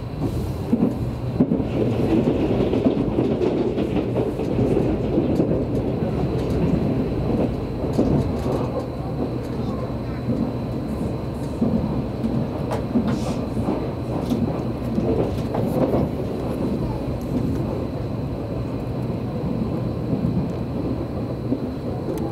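Cabin noise of an Odakyu limited express train running at speed: a steady low rumble from the running gear, with a few sharp clicks scattered through it.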